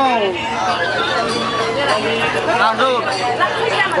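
A man speaking, his words running on without pause, over a steady low hum.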